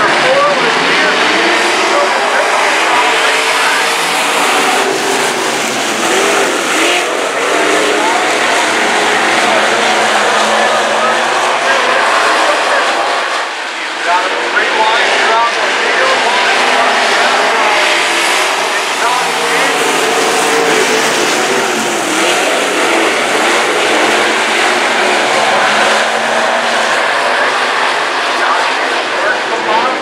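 A pack of dirt-track stock cars racing, their engines revving up and down as they run the oval. The sound dips briefly about halfway through.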